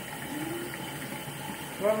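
Bathroom sink tap running steadily as a child washes his hands under it.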